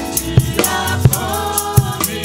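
A man singing a French gospel worship song into a microphone, backed by drums and percussion hitting a regular beat.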